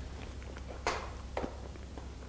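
Metal teaspoons clinking against small ceramic dessert cups during tasting: a sharp click just under a second in and a softer one about half a second later, over a low steady hum.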